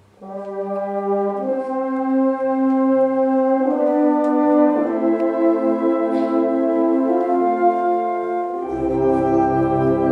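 Concert band playing held brass chords that move to new notes every second or two. Low bass instruments come back in near the end.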